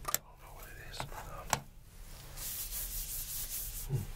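Hands in medical gloves rubbing together close to the microphone. It opens with a few sharp clicks, and from a little past halfway comes a fast, scratchy rubbing.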